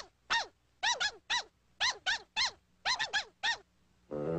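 Cartoon chipmunks chattering: about a dozen short, high-pitched chirps, each rising and then falling in pitch, in quick groups of two or three.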